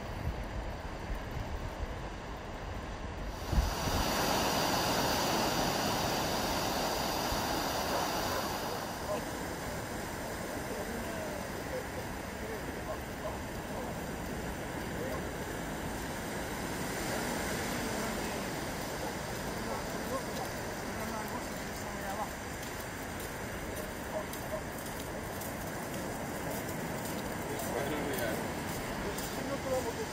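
Surf on a sandy beach: a steady rush of breaking and washing waves, which steps up louder about three and a half seconds in.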